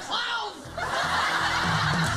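Several TV end-credit soundtracks layered over each other: a voice chuckling and laughing over music, then a louder hissing wash setting in just under a second in.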